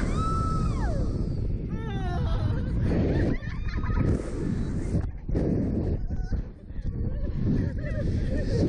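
Riders on a Slingshot reverse-bungee ride screaming and laughing, with wind rushing over the microphone as the capsule swings. A long high scream fades out in the first second, then quick wavering laughter follows, with more shrieks and laughs later.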